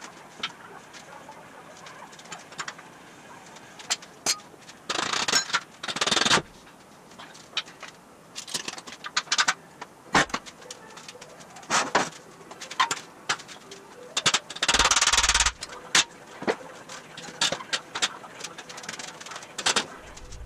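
Steel chassis parts and tools being handled: scattered knocks, clanks and clicks, with two longer, louder bursts of about a second each, around five and fifteen seconds in.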